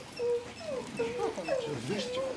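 An animal whining in a rapid series of short, high whimpers, several to the second.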